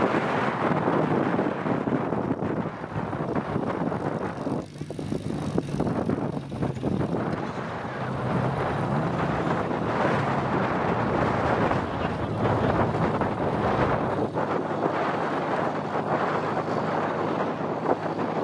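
Small open two-seater trials car's engine running under load as it climbs slowly up a grassy slope, partly buried under heavy wind buffeting on the microphone.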